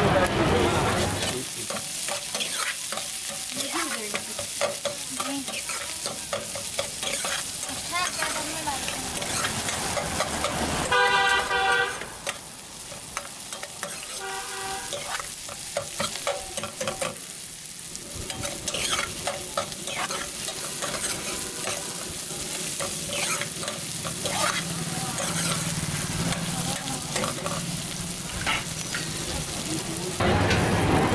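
Metal ladle stirring and scraping vegetables in a steel wok, clicking against the pan over a steady sizzle of frying oil. A vehicle horn honks for about a second about eleven seconds in, and again more faintly a few seconds later.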